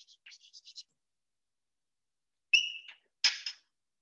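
Chalk writing on a blackboard: a quick run of short scratchy strokes in the first second. About two and a half seconds in there is a loud, high, whistle-like squeak, followed by a short loud scrape.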